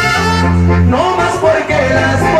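Mexican banda brass band playing an instrumental passage between sung verses: a low sousaphone note held for under a second, then the horns take up a moving melodic line.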